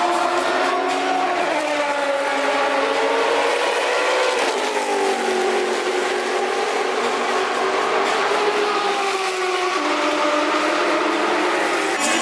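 A car's engine running hard on the race track, its pitch sliding down over the first few seconds, rising again about four seconds in, holding steady, then dropping once more near the end as it changes speed.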